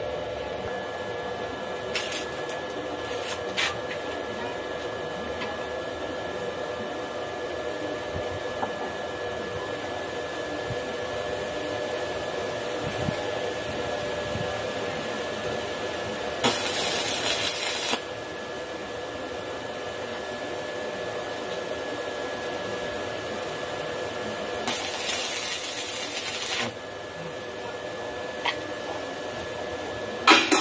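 Stick (arc) welder crackling in two short welds on steel tubing, about one and a half and two seconds long, starting and stopping sharply, one past the middle and one near the end. A steady electrical hum runs underneath, with two sharp clicks a few seconds in.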